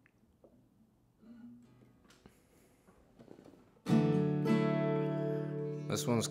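Acoustic guitar: faint string and handling sounds and a soft plucked note while the tuning pegs are adjusted, then about four seconds in a full strummed chord rings out and sustains.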